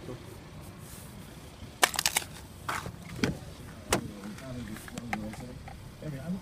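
Driver's door of a 2017 GMC Acadia being opened: a quick cluster of handle and latch clicks about two seconds in, then a few more single clicks and knocks.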